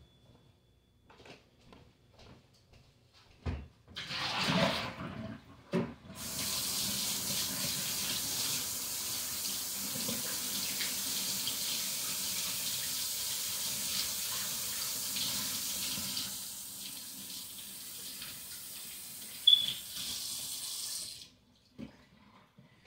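Kitchen sink tap running in a steady stream for about fifteen seconds while hands are rinsed of body scrub. It starts about six seconds in and is shut off just before the end, after a few faint knocks and a short splash-like rush of noise.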